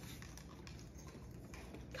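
Faint light taps and rustles of plastic toy packaging being handled and fitted into a basket of paper shred.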